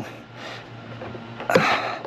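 A faint steady hum, then about one and a half seconds in a short, breathy exhale of effort.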